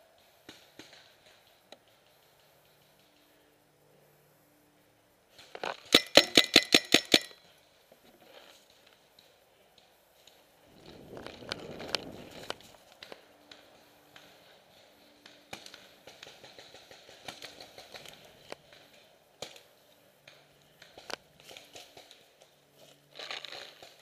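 Paintball marker firing a rapid string of about ten shots in just over a second. After it come rustling and crunching footsteps through dry leaves and pine needles as the player moves.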